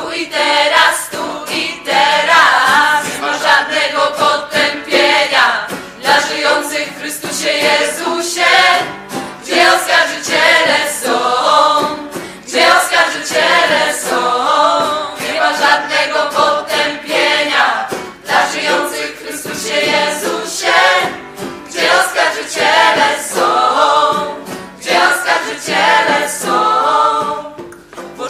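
A group of voices singing a Polish religious pilgrimage song together, in continuous sung phrases.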